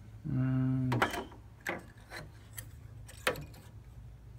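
Rail-mounted WD Purple hard drive being handled into the metal front drive bay of a Hikvision NVR: four sharp clicks and knocks of the drive and its rails against the cage. The clearest clicks come about a second in and near the end. A short voiced 'uh' is heard just before the first click.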